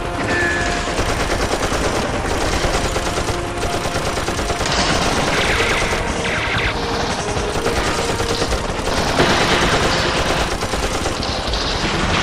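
Dense, continuous gunfire from many rifles firing at once, a battle fusillade with no pause.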